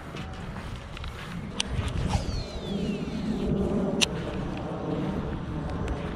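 Wind rumbling on the microphone while a Shimano SLX baitcasting reel is cast: the spool spins out with a thin whine that falls in pitch over about a second, followed by a sharp click as reeling begins.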